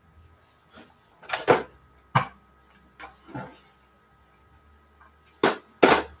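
Fabric scraps being handled and sorted on a worktable: a handful of short rustles and knocks at uneven intervals, the loudest two close together near the end.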